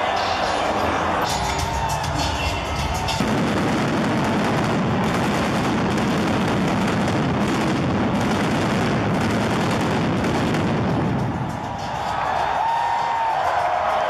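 Loud arena music over the PA with a run of pyrotechnic bangs and crackle in the middle, as fountains of sparks fire on the entrance stage. The bass-heavy part drops away about twelve seconds in.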